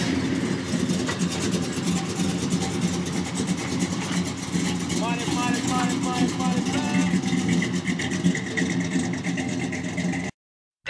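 Chevrolet Chevelle's engine running steadily as the car idles and then pulls slowly away. Voices are heard over it for a couple of seconds around the middle.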